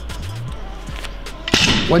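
Background music with a steady beat, then a brief rushing swoosh about one and a half seconds in, just before a man starts to speak.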